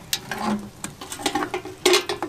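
Close handling of a metal ammo-box cache: a string of small clicks, rattles and rustles, with one louder click near the end.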